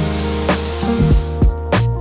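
Handheld electric paint sprayer spraying paint, a steady hiss that fades out about one and a half seconds in. Background music with a steady beat plays throughout.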